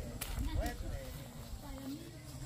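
Faint talking voices in the background, with a couple of sharp clicks about a quarter and two-thirds of a second in.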